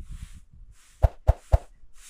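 Three quick, loud pop sound effects of an on-screen subscribe-button animation, about a second in. Under them, a broom sweeps a dirt floor in even swishes, about two strokes a second.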